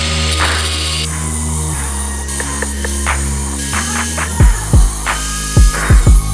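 Background music: sustained bass notes under changing chords, with a deep kick-drum beat coming in about four and a half seconds in.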